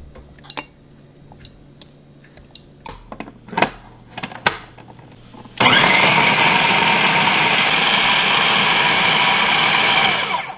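Metal tongs clinking against a glass food processor bowl as pork chunks are dropped in. About halfway through, the food processor switches on suddenly and runs loud and steady with a high whine, mincing the raw pork.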